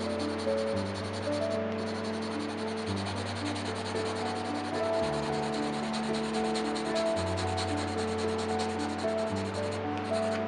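Graphite pencil shading on sketchbook paper: a continuous dry scratching made of many quick, closely spaced strokes. Soft background music with long held notes plays underneath.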